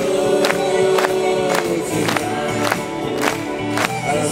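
Live band playing an upbeat song with a steady drum beat of about two hits a second, backing vocalists holding long sung notes over it.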